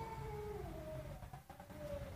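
A faint, held tone in a pause between spoken sentences, stepping lower in pitch about a second in, over a low hum.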